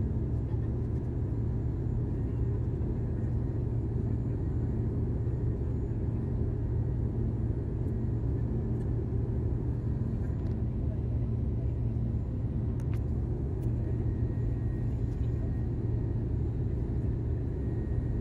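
Steady low roar inside the cabin of an Airbus A320 in flight, heard from a window seat beside the engine.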